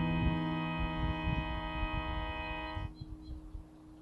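A strummed guitar chord rings out and fades, then cuts off about three seconds in. A steady low hum and an uneven low rumble are left underneath.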